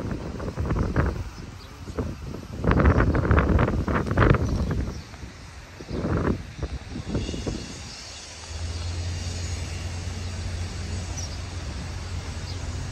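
Car driving along a road, heard from inside the car: rumbling noise that surges loudly several times in the first five seconds and again around six seconds, then settles into a steady low road and engine hum.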